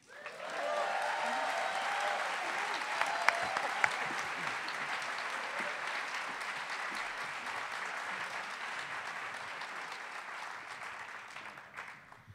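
Audience applauding, starting suddenly and holding steady before dying away near the end, with some whoops in the first seconds. Two sharp clicks stand out about three to four seconds in.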